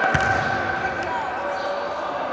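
A futsal ball kicked on an indoor court: a single thump just after the start, ringing in the hall. Under it, spectators' voices, one long held shout fading out about a second in.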